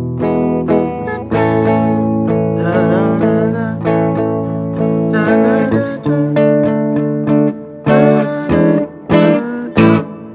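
Electric guitar strumming chords of a progression in A major, each chord left to ring, with quicker, shorter strums in the last two seconds.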